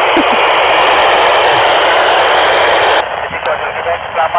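FM radio receiver hiss from the satellite downlink, a loud steady rush of static through the transceiver's speaker that cuts off abruptly about three seconds in. A faint voice then comes through the radio.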